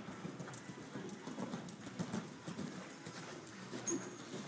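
Hoofbeats of a cantering horse on the soft dirt footing of an indoor riding arena: a running series of dull thuds.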